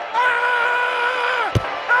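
A man's long, held yell of about a second and a half, its pitch sagging as it dies away. A sharp smack follows, and a second drawn-out yell begins near the end.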